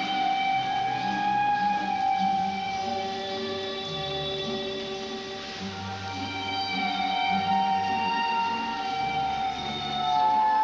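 The skater's program music playing through the arena: slow music of long held notes with no clear beat.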